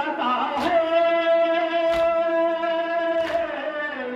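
A male voice chanting a nauha, a Muharram lament, holding long drawn-out notes through a microphone. About every 1.3 seconds it is punctuated by a sharp slap of mourners beating their chests in matam, three times in all.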